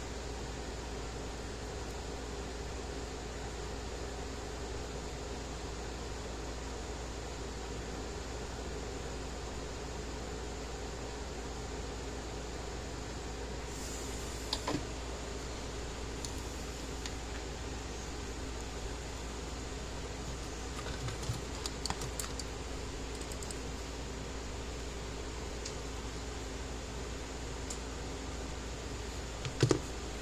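Steady hum and hiss of workshop room noise, with a few small clicks and taps from handling wire and tools on a workbench during soldering. The loudest clicks come just before the end.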